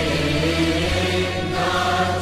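Background music: a choir chanting a slow hymn in long held notes over steady low bass notes.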